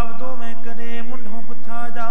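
Sikh kirtan: long, drawn-out sung notes held and shifting gently in pitch.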